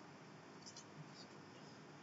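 Near silence: room tone, with a couple of faint computer keyboard clicks about a second in.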